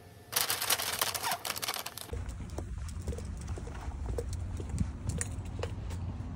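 Crinkling and clicking as cherry tomatoes are handled out of a plastic produce bag into a glass bowl, for about two seconds. Then, outdoors, a low rumble of wind on the microphone with light taps about twice a second.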